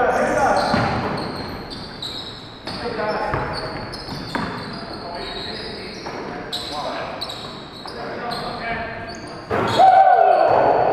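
Indoor basketball game: a basketball bouncing on the hardwood gym floor, short high sneaker squeaks, and players calling out indistinctly, with the echo of a large gym. A sudden louder burst comes just before the end.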